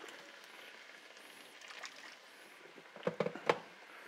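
Faint, steady sizzle of a soy-and-mirin liquid with kombu simmering in a wide steel frying pan, then a few short, sharp splashing sounds about three seconds in as a little water is added to the hot pan.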